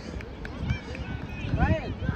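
Distant, indistinct shouts from players and spectators across a soccer field: a short call near the middle and a longer one toward the end, over a steady low outdoor rumble.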